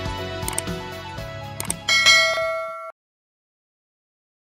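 Sound effects from a subscribe-button animation over background music: two sharp mouse clicks, then a bright bell ding about two seconds in that rings for about a second before the audio cuts off suddenly.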